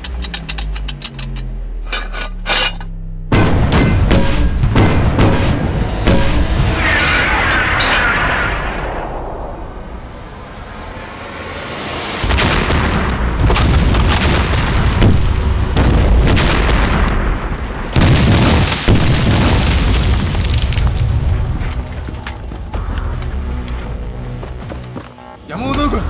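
Film sound effects of artillery shells exploding. A few sharp cracks come first, then a sudden heavy blast about three seconds in that rumbles on and fades. More blasts follow from about twelve seconds in, with another sharp one near eighteen seconds, over a film score.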